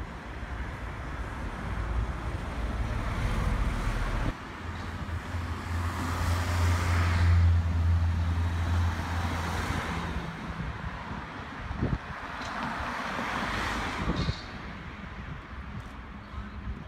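Street traffic: a vehicle passes with a low engine drone through the middle, and another passes near the end.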